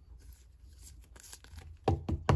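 Faint handling sounds of a rigid plastic top loader and trading card, with one sharp tap near the end.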